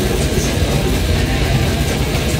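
Death metal band playing live: distorted electric guitars over dense drumming, steady and loud.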